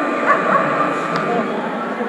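A dog barking a couple of short times about half a second in, over the steady chatter of a crowd in a large hall.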